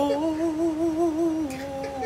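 A man humming a long held note with a slight waver, stepping down to a slightly lower note about one and a half seconds in.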